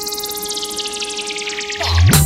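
DJ remix intro effects: a rapid stuttering sweep that falls steadily in pitch over a held steady tone, with a deep bass swell rising near the end into the drop of the dance track.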